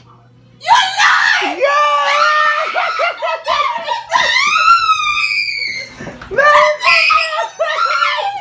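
A woman screaming in shocked, joyful surprise. The high-pitched screams start under a second in, climb higher around four seconds in, break off briefly about six seconds in, then start again.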